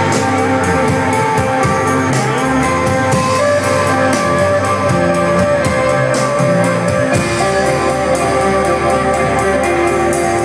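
Live rock band playing: electric guitar and bass holding sustained notes over a drum kit with steady cymbal and drum hits, all at a constant loud level. The low bass notes change about seven seconds in.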